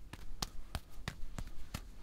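A string of light, sharp taps, about seven over two seconds at an uneven pace, cutting off suddenly near the end.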